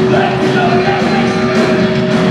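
Live punk rock band playing loud and steady, with electric guitar, bass guitar and drums, and long held notes.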